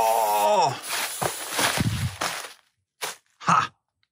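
A can of wasp spray jetting in a long hiss for about two and a half seconds, followed by two short bursts about a second later. A man's drawn-out "whoa" trails off during the first second.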